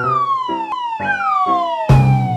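Cartoon falling-whistle sound effect, sounded twice: each a long whistle that rises briefly, then slides down in pitch over about a second. It plays over a bouncy piano tune, and a loud thud hits near the end as the falling object lands.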